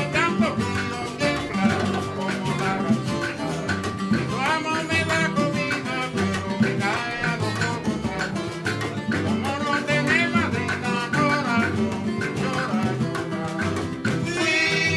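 Cuban son music played on the Cuban tres, its paired steel strings picked in quick runs, with guitar, bass and bongos keeping a steady dance rhythm underneath.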